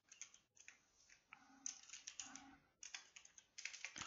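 Computer keyboard keystrokes: faint typing in short runs of quick clicks with brief pauses between them.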